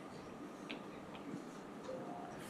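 Quiet lecture-hall room tone with a faint steady hum and three light clicks about a second into the pause.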